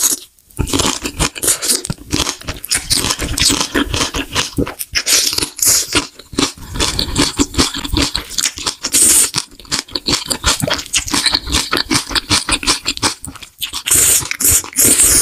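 Close-miked chewing of a big mouthful of black bean noodles with green onion kimchi: loud, continuous wet smacking with crisp crunches from the kimchi stalks.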